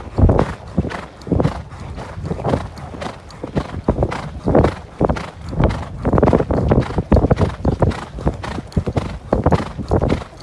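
A horse's hooves thudding on a deep sand track under its rider, in an uneven run of several beats a second.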